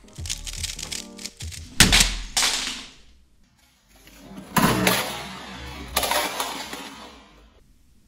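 A couple of sharp knocks on a desk, then a plastic QiYi speedcubing timer kicked off the desk crashes onto a hard floor about four and a half seconds in, rattling, with a second clatter about a second later. Background music plays under the start.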